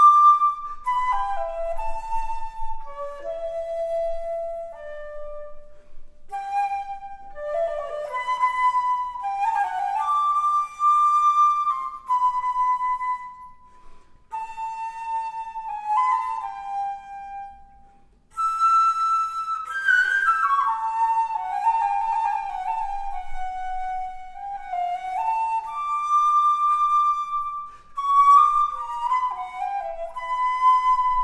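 Solo 1820s Drouet eight-key wooden flute played in a melodic passage of quick runs and leaps, one line with no accompaniment. The playing breaks off briefly about eighteen seconds in, then resumes.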